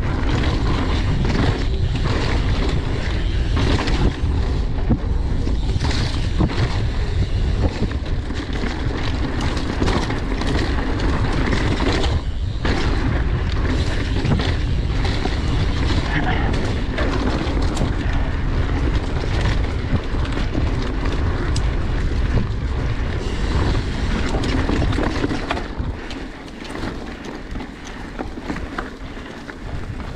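Wind buffeting a chest-mounted action camera's microphone on a mountain bike at speed, with tyres on a dirt trail and the bike rattling and clattering over bumps. It gets quieter near the end as the bike slows.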